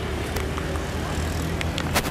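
Street ambience: a steady low rumble of motor-vehicle traffic, with a sharp click near the end.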